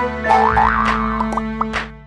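Short, bright cartoon jingle for an animated channel logo: steady musical notes with sliding pitch swoops and quick rising sweeps, fading out near the end.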